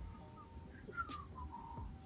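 A few faint, short high-pitched chirps and whistled notes that glide slightly in pitch, over low room noise.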